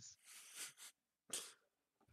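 Faint breathy puffs from a person through a voice-call microphone: a longer hiss of breath in the first second, then a short sharp one about a second and a third in.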